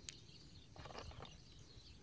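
Near silence: faint outdoor background with one soft click just after the start.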